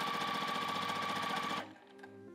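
Juki sewing machine stitching a seam at speed: a steady motor whine with rapid, even needle strokes. It stops suddenly about one and a half seconds in.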